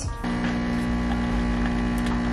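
Espresso machine's pump running as it pulls a shot: a steady, even hum that starts a moment in.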